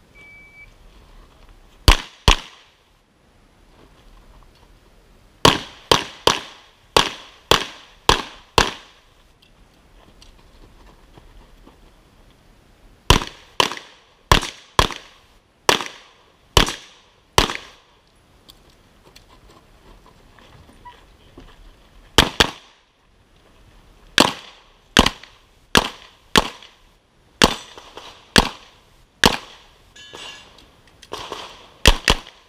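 A short electronic shot-timer start beep, then semi-automatic pistol shots fired in quick strings: a pair, a run of about seven, another run of about seven, a pair, and a run of about nine, with gaps of a few seconds between strings.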